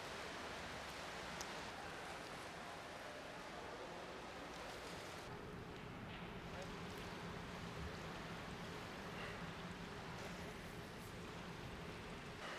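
Faint, steady rushing noise of swimming-pool water, with a low hum underneath.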